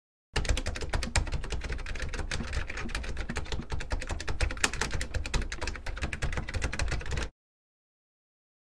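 Rapid, irregular clicking and crackling with a low rumble beneath, starting abruptly just after the start and cut off suddenly about seven seconds in.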